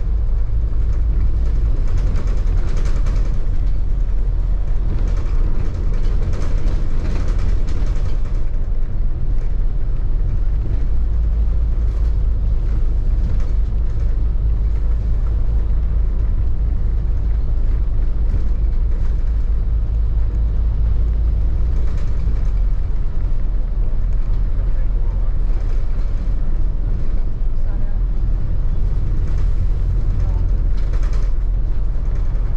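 Steady, loud low rumble of an open-top double-decker bus on the move: wind over the open top deck and the drone of the engine and tyres.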